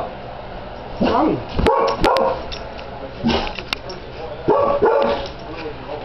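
Boxer dog giving about four short barks and whines in a row, begging for food.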